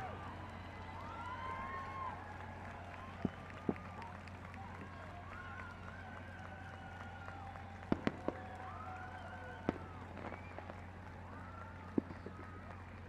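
Distant aerial fireworks shells bursting with sharp bangs: two a half-second apart, then a quick cluster of three and one more, over a steady low hum.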